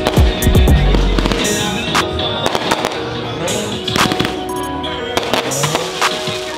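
Aerial fireworks bursting and crackling in repeated sharp cracks, heard together with background music. The music has a deep bass line for the first second and a half.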